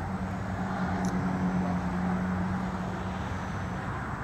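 A steady low mechanical hum over outdoor background noise.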